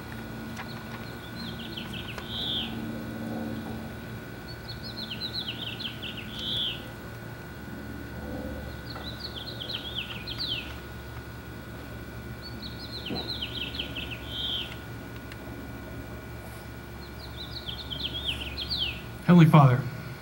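A songbird sings a short phrase of quick, falling notes about every four seconds, five times, over a faint steady hum. Near the end a brief, loud sound comes from close to the handheld microphone.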